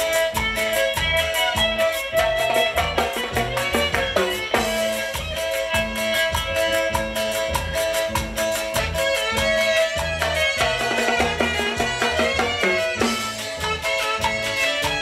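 A live band playing Mixtec regional dance music: saxophone and guitar melody over drum kit and electric bass, with a steady, regular dance beat.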